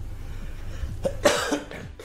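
A single short cough about a second in, over a low steady hum.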